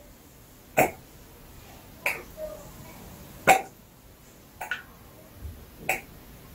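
A soft plastic bottle of green tea seed oil squeezed over a glass beaker, giving five short squirts about a second or so apart as the oil is measured out.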